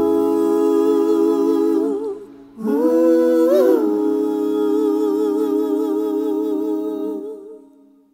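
A lone voice humming two long held notes, nearly unaccompanied, as the last guitar chord dies away. The second note wavers with a slow vibrato and fades out near the end, closing the song.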